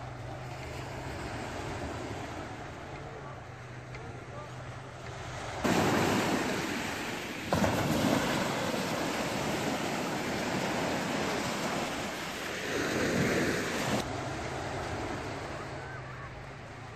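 Small waves breaking and washing up a coarse-sand shore, heard close with wind on the microphone. The surf starts abruptly about six seconds in, swells once near the end of that stretch and cuts off a couple of seconds before the end. Before and after it, quieter open beach ambience with a steady low hum.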